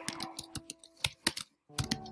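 Typing on a computer keyboard: a quick, irregular run of key clicks with a short pause a little past halfway.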